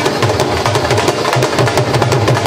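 Dhol drumming: large barrel dhols beaten with sticks in a fast, dense, unbroken rhythm, deep bass strokes under sharp cracking treble strokes.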